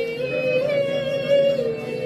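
A woman singing a worship song in long, held high notes that glide from one pitch to the next.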